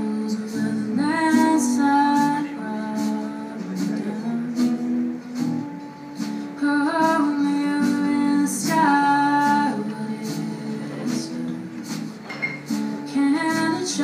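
Live band music: a woman singing lead over strummed acoustic guitar, with drums and percussion keeping a light, steady beat.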